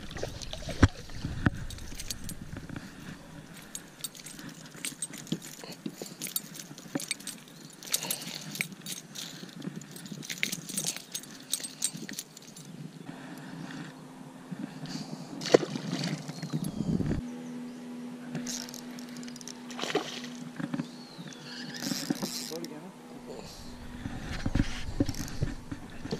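Scattered clicks and knocks of a rod, a spinning reel and a caught pickerel being handled aboard a boat. A steady low hum comes in about halfway through.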